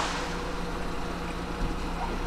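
Steady low hum of the Pindad Anoa's six-cylinder turbo-diesel engine idling, heard from inside the armoured troop compartment.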